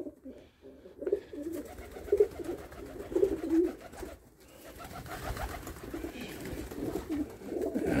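Several domestic pigeons cooing in the loft, in repeated short warbling phrases.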